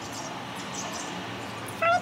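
Steady background hiss with faint high chirps, then near the end a sudden, loud, high-pitched animal call with a clear pitch.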